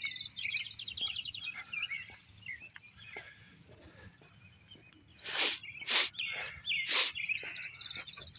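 A songbird singing a fast, even trill for the first two seconds or so, with scattered chirps after it. In the second half, three short, loud sniffs about a second apart, from a runny nose.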